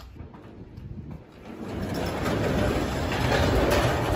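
Metal roll-up door rattling as it is raised, starting about a second and a half in.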